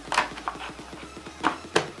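Clear plastic clamshell packaging for a pair of memory modules being closed and pressed shut: about four sharp plastic clicks and taps.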